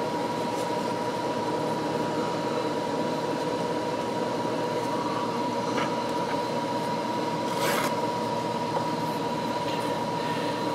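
Steady mechanical hum with a constant thin high tone running through it, and one brief soft noise about eight seconds in.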